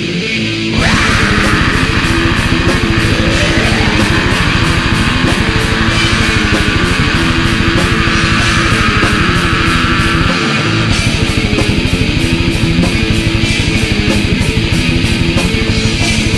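Black metal recording: distorted electric guitars, bass and drums. The full band comes in about a second in after a quieter opening and plays over a fast, steady beat. The low end drops out briefly about ten seconds in.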